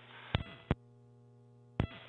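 Steady electrical hum on a radio communications feed, a buzzy tone with many overtones, broken by sharp clicks about a third of a second in, again at about 0.7 s, and once more just before the end.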